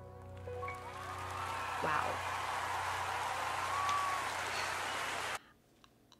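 The last note of a live song dies away, then a concert audience applauds and cheers. The applause cuts off suddenly about five seconds in.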